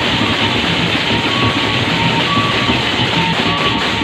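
Sasak gendang beleq ensemble playing: a dense, continuous clashing of many paired hand cymbals over large barrel drums, with a few short held tones on top.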